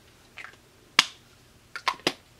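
Sharp clicks without speech: a faint tap, then one loud crisp click about a second in, then a quick pair of clicks near the end.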